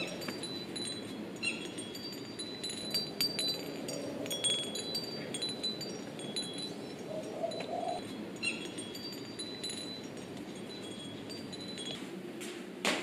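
Hanging wind chimes, a glass wind bell among them, tinkling with irregular short, high ringing strikes that thin out over the last few seconds, over a faint steady background noise.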